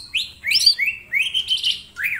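Male green leafbird (cucak ijo) singing a fast run of short whistled notes that sweep up and down, about five a second.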